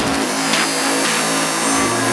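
Dark psytrance track in a breakdown: a noisy, industrial synth texture over held tones, with the kick drum and deep bass dropped out.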